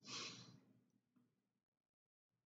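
A man's short, soft sigh at the very start, then near silence.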